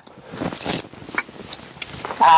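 Footsteps and light rustling and scraping in dry grass and undergrowth, a few short scratchy sounds over a quiet outdoor background.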